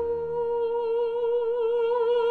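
A countertenor holding one long high note, entering straight and swelling as a vibrato widens toward the end. Low accompaniment from period instruments fades out under it in the first half second.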